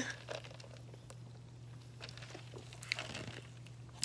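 Faint sips through a drinking straw from a cup, with a few soft clicks, over a steady low hum.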